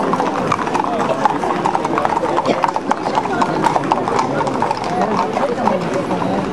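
Many Camargue horses walking on a paved street, their hooves clip-clopping in a dense, overlapping patter.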